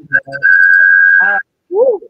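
Audio feedback whistle through a video call: a loud, steady high tone held for about a second over voices. It is typical of a guest's microphone picking up the live stream playing in the background on her own device.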